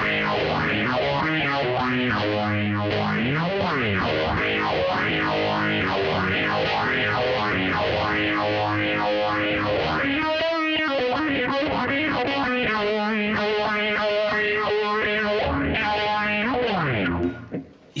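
Distorted electric guitar, a Fender Telecaster driven by a Plexion distortion pedal into an MXR Phase 90 phaser with its speed at about one o'clock, played continuously. The phaser's swirl sweeps up and down over and over and is very pronounced.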